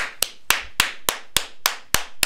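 A man clapping his hands in front of his face: about eight sharp claps at an even pace, roughly three and a half a second.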